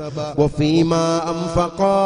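A man's voice chanting in a drawn-out, wavering melody over a steady low held tone. The voice breaks off briefly near the end, then goes on.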